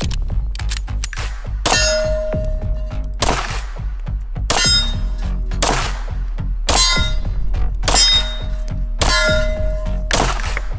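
Background music with a pulsing bass under ringing metallic clang hits, seven of them, one a little more than every second.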